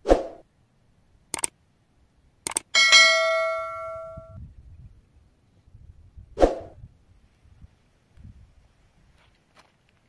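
Subscribe-button animation sound effect: a short burst, a single click, a quick double click, then a bell-like notification ding that rings out and fades over about a second and a half, with another short burst a few seconds later.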